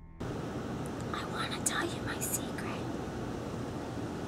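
Faint whispering from a couple of people over a steady background hiss. The hiss cuts in suddenly just after the start.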